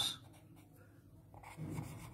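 Pen scratching faintly on paper held on a clipboard as words are written.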